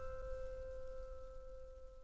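Last piano chord of a sped-up pop song ringing out, its held notes slowly dying away.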